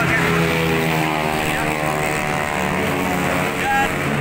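A passing motor vehicle engine on a busy street, its steady hum slowly dropping in pitch, over general traffic noise.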